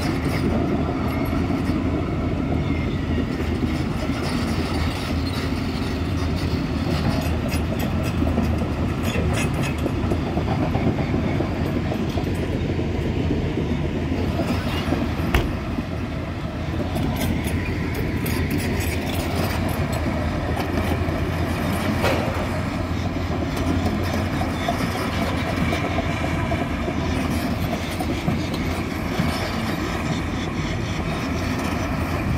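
Several Caterpillar 336 hydraulic excavators running together, their diesel engines and hydraulics working steadily under load, with clatter from the steel crawler tracks and buckets. A spell of rapid clatter comes about a quarter of the way in, and a sharp knock comes about halfway.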